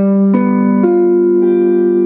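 Clean electric guitar picking a G dominant seven chord in the C7 shape, one note at a time from the lowest string up. Four notes enter about half a second apart and ring on together as a sustained chord.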